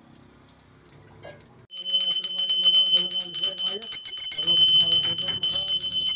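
A puja hand bell starts ringing suddenly about two seconds in and then rings rapidly and continuously, loud and high-pitched. Voices chanting sound beneath the bell.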